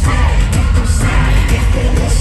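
Live pop music through an arena PA: a female lead vocal over heavy bass and drums, recorded loud from the crowd.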